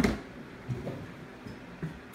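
Handling sounds at a foil-lined cardboard shipping box: a thump at the start as something is set down, then a few light knocks and rustles.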